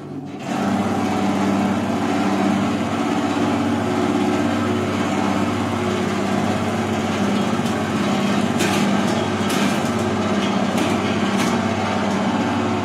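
A homemade electric peanut-shelling machine switched on: its motor starts up in the first half second and then runs with a steady hum. A few sharp ticks sound over the hum in the last few seconds.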